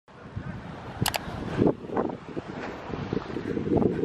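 Wind buffeting a handheld camera's microphone outdoors, a rough low rumble, with two sharp clicks about a second in.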